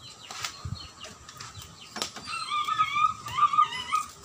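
A bird calls with a wavering, warbling note through the last two seconds, the loudest sound here. Before it come a few sharp metallic clicks from metal tongs against a tin-can oven.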